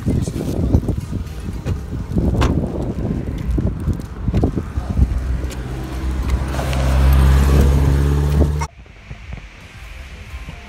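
Knocks and rubbing from a handheld phone being moved about inside a car, over a low rumble. In the second half a strong steady low hum builds for a couple of seconds and cuts off suddenly near the end.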